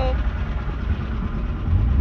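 Steady low rumble of a car's engine and road noise, heard inside the cabin of the moving car, growing slightly louder near the end.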